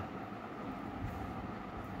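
Steady, faint background noise: an even hiss with a low rumble and no distinct clicks or knocks.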